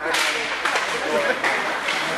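Ice hockey play at a faceoff: a sudden scrape of skates on the ice and a few sharp clacks of sticks as play starts, with spectators' voices over it.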